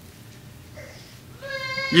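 A pause in a man's sermon with only faint room tone. About one and a half seconds in, he starts a held, steady-pitched "you" into the microphone.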